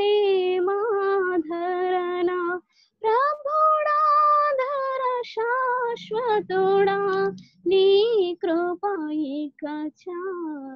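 A young woman singing solo, with no accompaniment, in sung phrases with long held notes and brief breaks between them.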